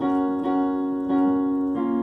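Keyboard playing full right-hand piano chords from the D♯m–Bmaj7–F♯–A♯m7 loop in F♯ major. One chord is struck about three times in a steady pulse, then it changes to a new chord near the end.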